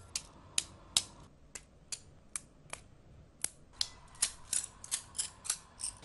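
A series of sharp clicks at uneven spacing, about sixteen in all, coming closer together in the last two seconds.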